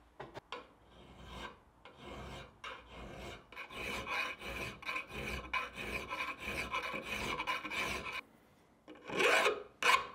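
Flat hand file working the edge of a metal wafer-iron plate's handle lug held in a vise: rasping strokes that quicken into a steady rhythm of about three to four a second. The strokes stop near the end, then come back as one louder stroke.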